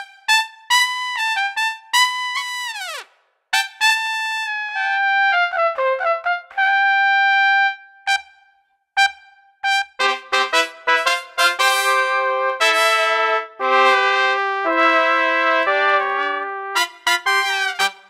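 Sampled jazz trumpets from Impact Soundworks' Straight Ahead Jazz Horns virtual instrument. A single lead trumpet plays a phrase of held notes, the first ending in a downward fall. About ten seconds in, a four-trumpet section plays chords together, closing on short detached notes.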